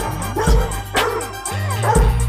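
A Weimaraner giving short yipping barks, about four in two seconds, over background hip hop music with a steady beat.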